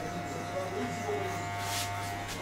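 Electric hair clippers buzzing steadily while cutting a man's short hair, with a short hiss near the end.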